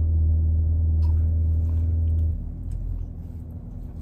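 Low steady hum of a car heard from inside the cabin, which cuts off a little past two seconds in and leaves quieter cabin noise with a few faint small clicks.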